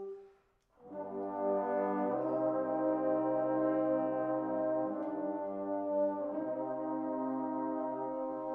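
Trombone choir playing slow, sustained chords. The sound breaks off for a moment just before the first second, then a new chord enters and the harmony shifts every couple of seconds.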